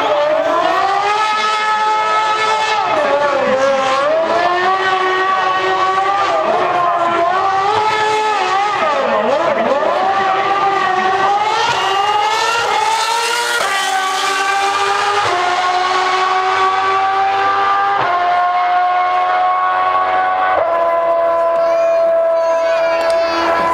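Formula One car's high-revving V8 engine worked hard while the car spins in tyre smoke, its pitch wavering up and down. In the second half it accelerates away, the pitch climbing and dropping suddenly four times as it changes up through the gears.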